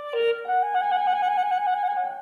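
Clarinet playing a short rising phrase: a couple of quick notes stepping up, then one long held note.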